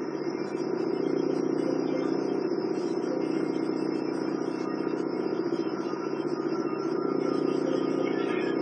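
A steady low mechanical drone with a thin high whine above it. It runs evenly without rising or falling.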